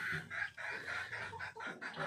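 Chickens clucking in a quick run of short, repeated calls, about four or five a second.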